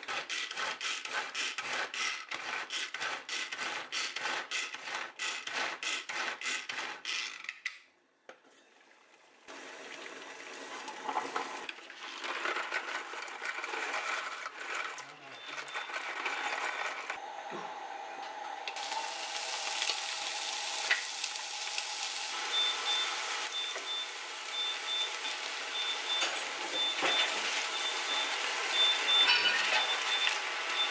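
A hand-operated food chopper chopping onion, its blades clacking rapidly several times a second for about eight seconds, then cutting off. After a brief hush, pasta rattles out of a box into a pot. From a little past halfway, vegetables sizzle steadily in a frying pan while a high beep repeats in the background.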